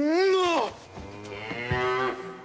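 A man's long, drawn-out, moo-like groan as he stirs from sleep, rising and then falling in pitch. It is followed by a fainter, steadier held tone.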